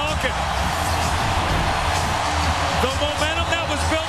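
Hockey arena crowd cheering steadily after a home goal, with music playing over the arena sound system and voices shouting through it.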